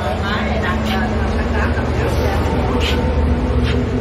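A running engine drones steadily at a constant speed, with a few light clicks and faint voices over it.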